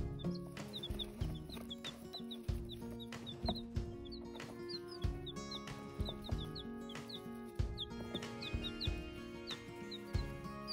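Polish chicks peeping: many short, high, falling cheeps scattered irregularly. Background music with a steady beat plays under them.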